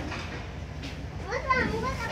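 A child's high-pitched voice calls out briefly in the second half, over a low, steady rumble inside the passenger train carriage.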